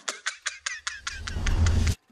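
A motor vehicle's engine: a low rumble building up louder in the second half over a fast, even ticking of about six a second, then cutting off suddenly.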